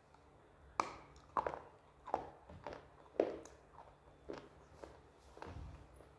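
Close-up crunching of a dried slate or clay stick being bitten and chewed, about nine sharp crunches roughly every half second to two-thirds of a second, starting about a second in.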